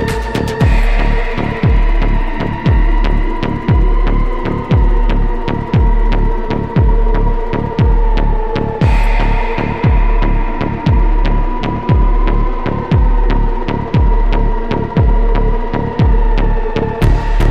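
Dark midtempo techno: a heavy kick drum about once a second under a sustained synth drone, with fast ticking hi-hats. The high end is filtered out about half a second in and returns about nine seconds in.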